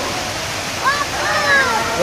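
Fountain water jets spraying and splashing into the pool below, a steady rushing hiss. Voices call out briefly about halfway through.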